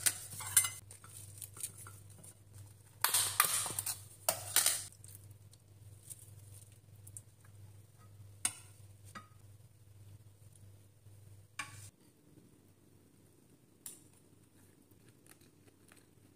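Food being plated by hand: two spells of rustling handling noise, then a few sharp clicks of a utensil against the plate and frying pan. Under it runs a low steady hum that cuts off about twelve seconds in.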